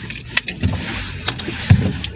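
A few light clicks and knocks, with a low thump about two-thirds of a second in and another near the end.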